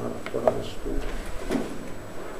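Handling noise of a handheld microphone being set down on a wooden desk: a few knocks and rubs, the sharpest about half a second in and another about a second and a half in.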